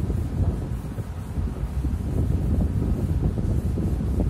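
Felt duster rubbing across a chalk blackboard in repeated, irregular wiping strokes, over a steady low rumble of wind-like noise on the microphone.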